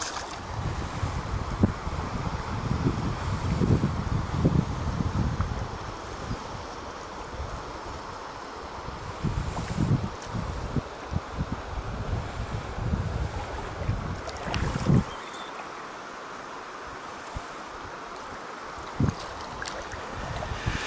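Wind buffeting the microphone in gusts over the steady rush of a shallow river riffle. The wind drops away about three quarters of the way through, leaving the river's rush and a few short knocks.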